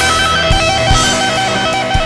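Instrumental rock passage: an electric guitar plays a fast repeating two-note figure over bass and occasional drum hits.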